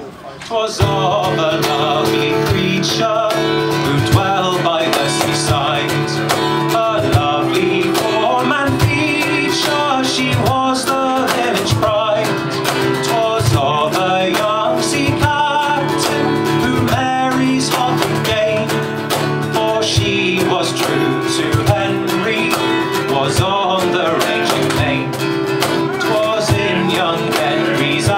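Instrumental break of an acoustic folk trio, starting about a second in: strummed acoustic guitar, cello, and a cajon struck by hand keeping a steady beat.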